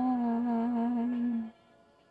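A voice holds one long hummed note at the end of a karaoke song. The note wavers slightly, then cuts off about one and a half seconds in, leaving only a faint backing track.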